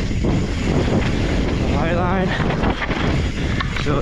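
Mountain bike descending a rough dirt and rock trail: wind rushing over the rider-mounted camera's microphone together with tyre and rattle noise from the bike. The rider's voice is heard briefly, about two seconds in.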